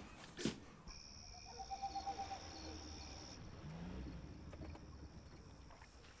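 Faint night ambience of a cricket trilling steadily on one high note, with a brief knock just under half a second in.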